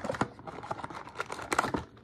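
Small cardboard blind box being torn open and its wrapped contents pulled out: an irregular run of cardboard clicks and wrapper crackles, thickest near the end.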